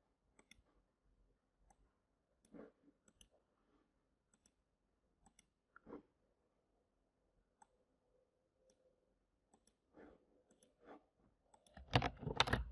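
Faint, scattered clicks of a computer mouse and keyboard keys, a second or two apart, with a quicker, louder run of keystrokes right at the end.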